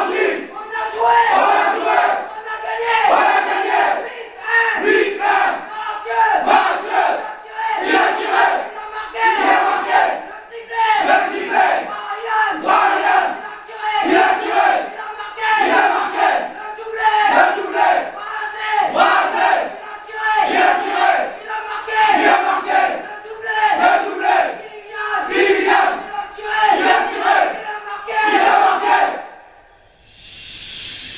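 A huddled team of teenage footballers chanting and shouting together in a steady rhythm, about one shout a second, a victory chant after a win. The chant stops abruptly near the end.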